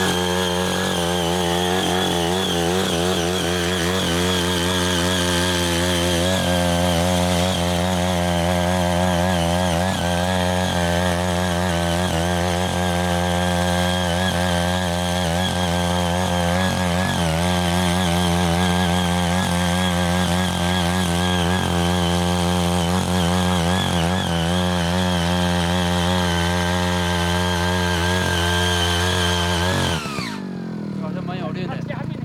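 Ching Yee CY80 5 HP power tiller's small engine running steadily under load as its rotary tines churn the soil, the pitch wavering slightly as the load changes. It cuts off abruptly at the very end.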